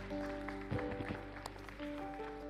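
Soft worship-band music with held, sustained chords, with electric guitar among them.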